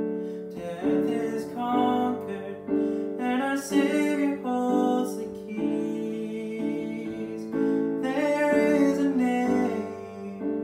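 A man singing a worship song to his own accompaniment on a Casio Privia digital piano, which plays sustained chords under the vocal line.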